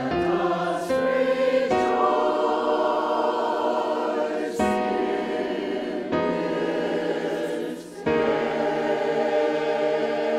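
Mixed church choir singing a choral call to worship, with a short break between phrases near the end.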